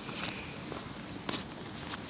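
Footsteps of a person walking, a few sharp steps over a steady hiss, the loudest step just past the middle.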